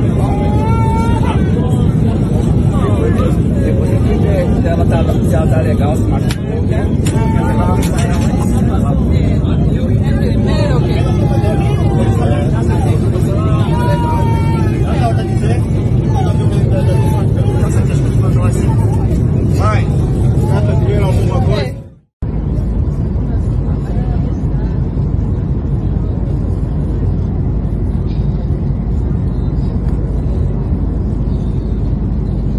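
Loud steady rumble of an airliner cabin in flight, with passengers' voices and cries over it. After a sudden cut about 22 seconds in, the cabin rumble goes on without voices.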